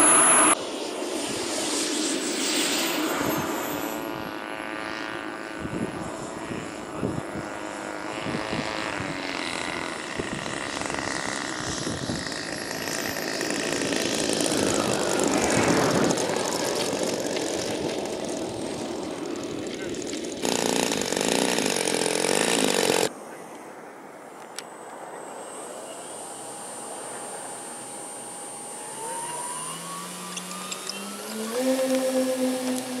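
Radio-controlled model airplanes heard across a run of short clips: steady propeller and motor noise from models in flight and taxiing on grass. Near the end a motor's pitch climbs as it speeds up.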